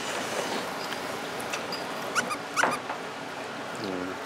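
Ramen noodles being slurped from bowls: a continuous wet sucking noise with a couple of short rising squeaks a little past halfway.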